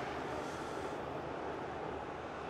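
Steady background noise of a stadium match broadcast, even and featureless, with no distinct calls, kicks or whistles.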